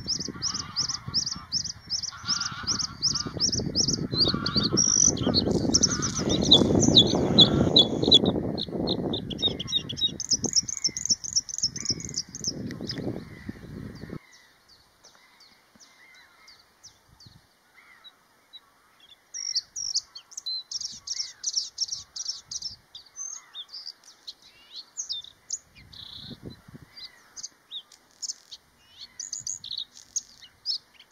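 Male bluethroat singing: fast series of rapidly repeated high notes, over a low rumble that cuts off suddenly about halfway through. After a few seconds' pause the song comes back in shorter, quieter, varied phrases.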